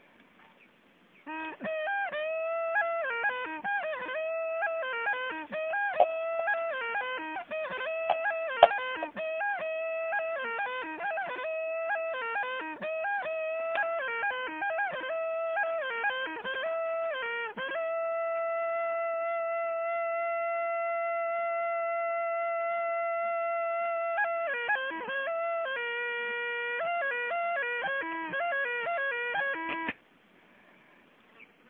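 A traditional Apatani flute playing a quick, wavering melody of short notes that bend and slide, starting about a second in. Partway through it holds one long steady note for about six seconds, drops to a lower note, then returns to the quick melody.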